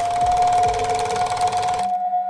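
Outro sound effect for an animated logo: a fast, rattling buzz under a steady high tone. The rattle cuts off suddenly just before the end while the tone rings on.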